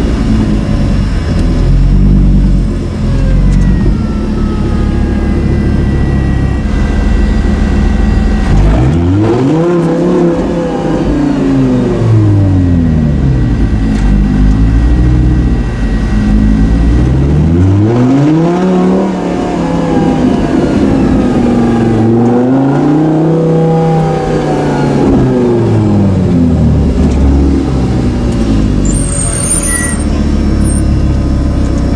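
Lamborghini Gallardo Super Trofeo's V10 engine heard from inside the cabin, rumbling at low revs. Three times the revs climb and fall back, about a third of the way in, around two-thirds of the way in and again shortly after.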